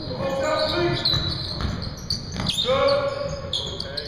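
A basketball bouncing on a hardwood gym floor during play, with sharp impacts scattered through, echoing in a large hall. Players' voices call out twice, the second time longer.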